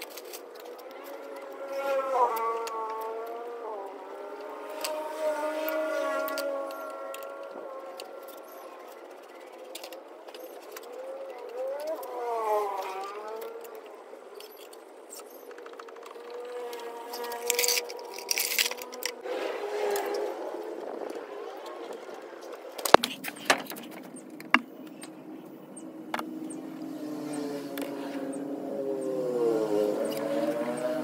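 A faint voice in the background, rising and falling in pitch, comes and goes. A brief metallic rattle comes just past halfway and two sharp clicks a few seconds later, from hands working at a Vespa PX's front wheel.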